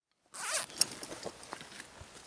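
A zipper on a canvas bag pulled open in one quick rasp about a third of a second in, followed by light rustling and small clicks of hands rummaging in the bag.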